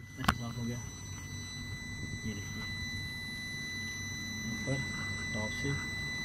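Faint, indistinct background voices over a steady hiss and a thin, high, steady whine, with a single sharp click just after the start.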